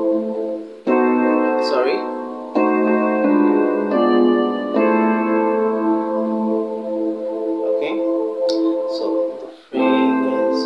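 An electronic keyboard in a piano voice plays a sequence of sustained chords. The chord changes several times in the first five seconds, and one chord rings for about four seconds before the next is struck near the end.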